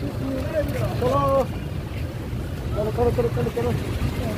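People's voices talking briefly in two short stretches, over a steady low rumble.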